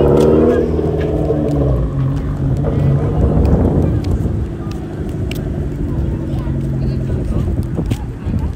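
A car engine running as the car moves slowly past, a steady low drone whose pitch shifts now and then, with voices around.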